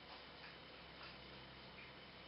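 Near silence: room tone, with a couple of faint small clicks.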